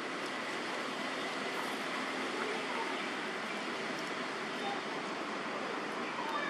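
Steady rushing background noise at an even level, with a few faint, short calls.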